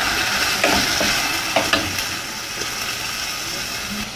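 Chopped onion sizzling in hot oil in a pan, stirred with a wooden spatula that makes a few light scrapes and taps. The sizzle eases off slightly as the onion settles into the oil.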